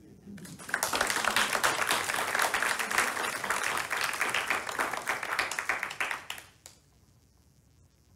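A congregation applauding. The applause starts about a second in, holds steady and dies away after about six seconds.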